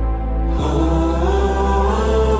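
Song with sustained vocals over a deep held bass; the chord changes about half a second in.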